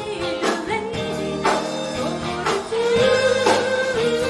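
Live band music with a woman singing lead over drums, electric bass, guitar and keyboard. Drum hits fall about once a second, and the music gets louder about three seconds in.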